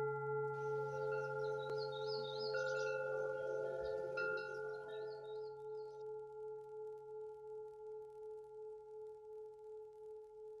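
A singing bowl rings on with one steady note that slowly fades and wavers in a regular pulse. Light, high chimes tinkle over it for the first half.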